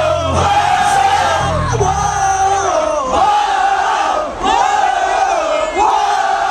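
Concert crowd shouting and cheering in long, repeated yells. A low rumble of amplified music drops out about two seconds in.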